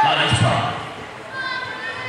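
Indistinct voices echoing in a large gymnasium, with one dull thud about half a second in.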